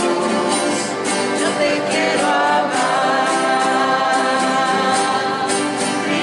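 Church choir singing the entrance hymn of a Mass, several voices holding long sung notes at a steady, full level.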